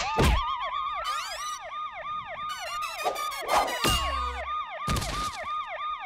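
Cartoon police-siren sound effect: a quick falling wail repeating about three times a second, with a few sharp hits over it.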